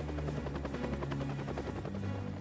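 Helicopter rotor blades chopping rapidly as the helicopter hovers overhead, heard over a film score of held low notes.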